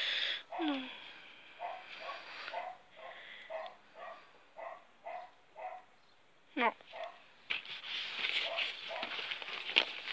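A dog barking repeatedly in the background, about two barks a second for several seconds. Near the end comes a rustle of dry feed pellets being handled.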